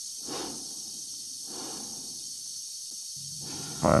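Slow, noisy breaths of an astronaut inside a spacesuit helmet, two soft breaths. A steady low hum comes in near the end.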